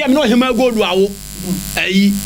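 A man speaking over a faint, steady electrical buzz.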